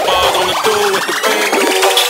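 Future bass electronic music at a build-up: the kick and bass cut out about half a second in while a synth riser sweeps steadily upward in pitch.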